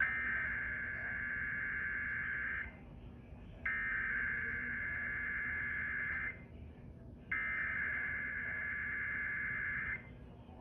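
Emergency Alert System SAME header: three bursts of digital data tones, each about two and a half seconds long with about a second between them, encoding a Required Weekly Test for the listed counties.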